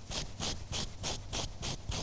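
A stiff round hairbrush raked quickly back and forth through a long-pile faux-fur throw, giving a rhythmic scraping of about four strokes a second.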